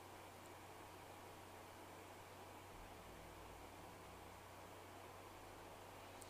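Near silence: faint steady hiss with a low hum, the recording's background noise.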